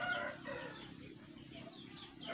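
Faint rustle of potting soil being crumbled off a pulled cactus's roots by hand, with faint clucking of chickens in the background.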